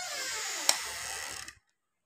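A hinge creaking as it swings, sliding down in pitch for about a second and a half, with a sharp click partway through. It stops abruptly.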